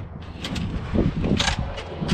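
Aluminium cooler slider loaded with an ARB fridge being pulled out on its drawer slides, running with a mechanical rattle and a sharp click about one and a half seconds in.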